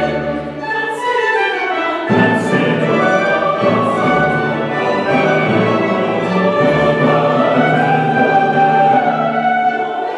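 Mixed choir singing classical sacred music with an orchestra's strings, violins and double bass among them, in held chords; the low notes fill out about two seconds in.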